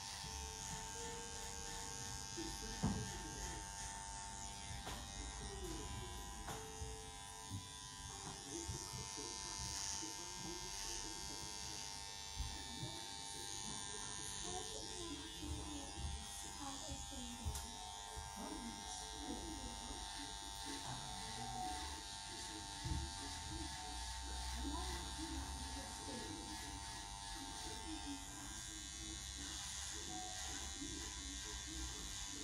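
Corded electric hair clippers buzzing steadily while trimming a beard, with a few light knocks.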